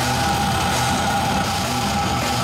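Death metal band playing live: heavily distorted electric guitars and drums at a steady loud level, with the vocalist screaming into the microphone. One long held note runs through the whole passage.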